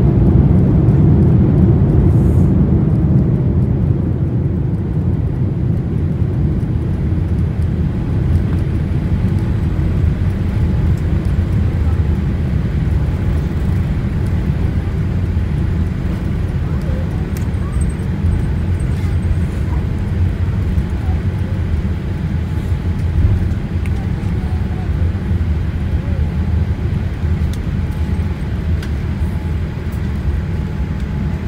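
Airliner cabin noise on the landing rollout: a steady low rumble of the engines and the wheels on the runway. It is loudest at first and eases over the first few seconds as the aircraft slows.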